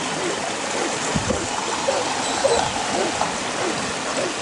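A distant huntaway barking repeatedly, about two barks a second, as it drives sheep up the hill, over a steady rush of wind noise, with a low gust buffeting the microphone about a second in.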